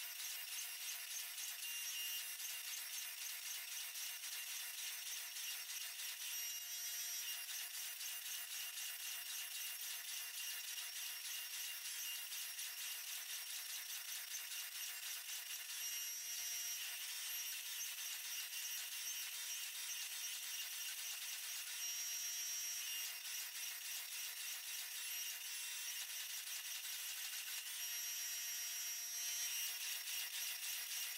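Hydraulic forging press running: a steady mechanical whine and hiss from its pump, with a brief change in tone several times, every six to nine seconds, as the dies squeeze a hot Damascus billet.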